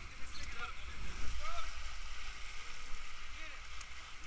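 River water rushing around an inflatable raft, a steady wash with a low rumble, and faint voices calling now and then.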